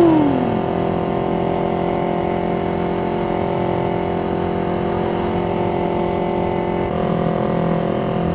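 Yamaha MT25's parallel-twin engine running at a steady cruising speed, a constant engine note that shifts slightly near the end.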